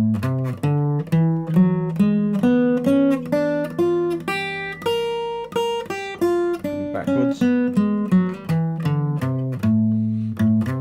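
Vintage Martin acoustic guitar playing an improvised minor pentatonic line of single picked notes, several a second, with a longer held note about five seconds in. The same scale shape is moved down a semitone at a time to follow an A minor 7, G sharp minor 7, G minor 7 progression.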